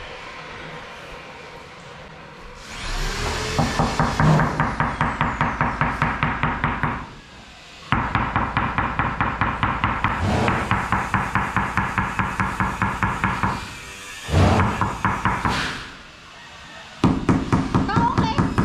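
A rubber-headed mallet rapidly tapping a large porcelain floor tile to bed it into the mortar. The knocks come about four a second in runs of several seconds, with short breaks between runs.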